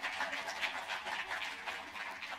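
Audience applause: many hands clapping together in a dense, even patter at the close of a talk.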